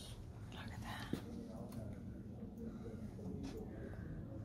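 Quiet shop ambience: faint, indistinct voices over a steady low hum, with a single sharp click about a second in.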